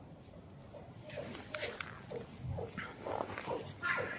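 Australian shepherd puppy whimpering in short bursts, louder toward the end, with a high chirping repeating about three times a second behind it.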